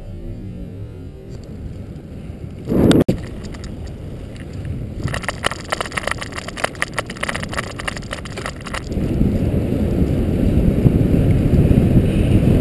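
Wind buffeting the microphone of a camera on a bicycle descending a steep road, over road rumble. There is a short loud gust about three seconds in and a run of irregular rattling clicks in the middle. The wind grows louder near the end as the bike picks up speed.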